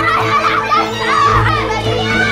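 A boy shouting in Arabic in distress, his voice high and strained, over a steady music score.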